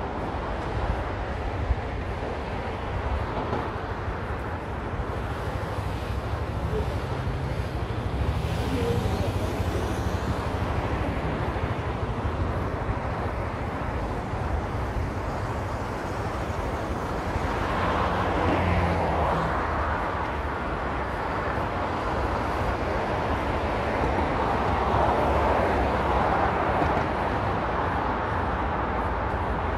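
Road traffic on a wide multi-lane city avenue: a steady hum of cars going by, swelling louder as vehicles pass about two-thirds of the way through and again near the end. A single short click sounds about two seconds in.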